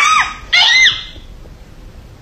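Two short, high-pitched squeals from a delighted baby, about half a second apart, each rising then falling in pitch.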